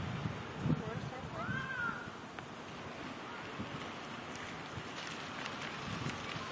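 Wind rumbling on the microphone of a handheld camera outdoors, with a short high call that rises and falls once about a second and a half in.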